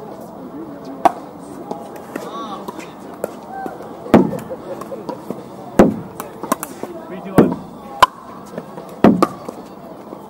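Pickleball rally: a hard plastic ball popping off paddles in sharp, single hits. There is one hit about a second in, then a steady exchange of about one every second and a half from about four seconds in, with distant voices under it.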